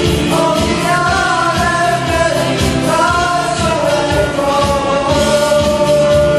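Live ukulele band playing a song: sung vocals over strummed ukuleles and a steady beat, with a long held note coming in near the end.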